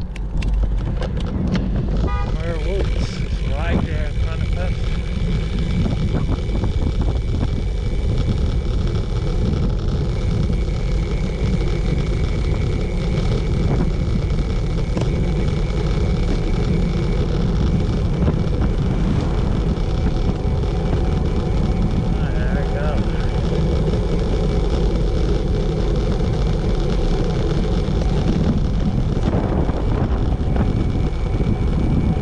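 Wind buffeting the microphone of a bicycle descending a mountain road at speed: a loud, steady rush that comes up just after the start. A faint thin whistle runs through the first half.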